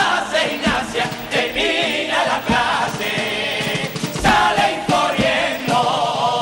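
Male carnival chirigota chorus singing loudly together, with instrumental accompaniment and heavy drum thumps about once a second.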